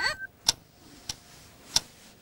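Three sharp clicks in an even rhythm, about 0.6 s apart, loud and soft in turn. A short sweeping tone fades out just as they begin.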